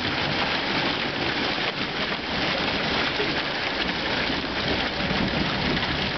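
Quarter-sized hail and rain coming down steadily from a thunderstorm: a dense, even patter of many small impacts on the lawn and sidewalk.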